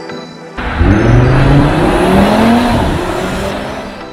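Audi RS 3's turbocharged five-cylinder engine accelerating hard. It starts suddenly about half a second in, its pitch rises, and it fades toward the end.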